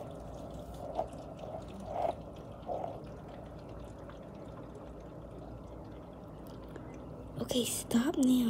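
Faint talk of men outdoors, heard through a window, over a steady low hum; a few brief sounds come in the first seconds and a louder voice near the end.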